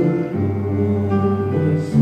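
Slow Taizé chant: sustained sung and instrumental chords that change about once a second, over a low bass note held from just after the start.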